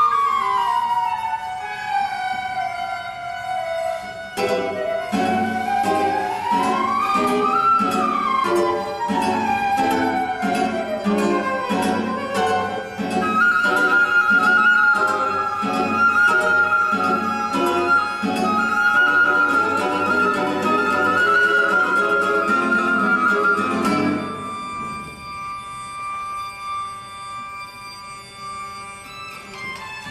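Live chamber music for flute, guitar and percussion: long sliding pitch glides up and down over quick repeated plucked guitar notes, then a wavering held high flute note. About four-fifths of the way through the busy texture stops suddenly, leaving quieter sustained tones.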